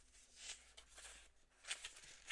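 Faint rustle of sheets of patterned craft paper being handled and turned over, with a soft swish about half a second in and a sharper one near the end.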